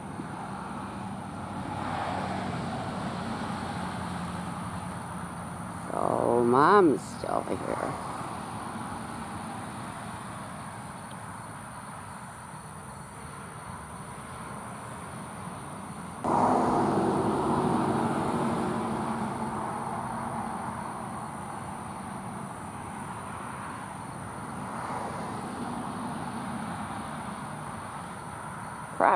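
A motor vehicle passing on a nearby road: its sound comes in suddenly about halfway through and fades slowly over several seconds. Under it runs a steady high-pitched insect trill.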